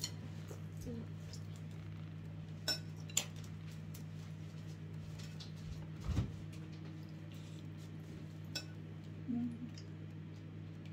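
Cutlery and dishes clinking: a few sharp clinks of a spoon against tableware, the loudest about six seconds in, over a steady low hum.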